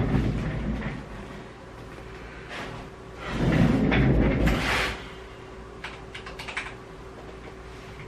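Computer keyboard and mouse being clicked a few times over a steady faint hum. A louder, noisier handling sound comes about three seconds in and lasts over a second.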